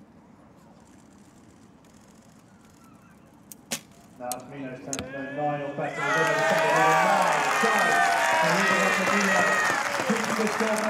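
A recurve bow shot: a sharp snap of the string on release about three and a half seconds in. Spectators then begin shouting, rising into loud cheering and applause from about six seconds in as the crowd reacts to the arrow.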